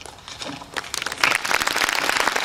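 Audience applause breaking out: a few scattered claps, then about a second in it swells quickly into full, dense clapping from a large crowd.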